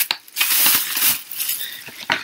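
Foil trading-card booster pack wrappers crinkling and rustling as they are handled, an irregular crackle.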